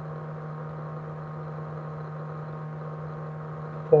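Steady low hum with a faint even hiss over it, unchanging throughout: the background noise of the voice recording.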